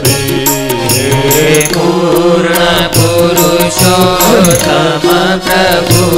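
Devotional bhajan: a voice singing a gliding, ornamented melody over sustained accompaniment and a steady rhythm of light percussion strikes.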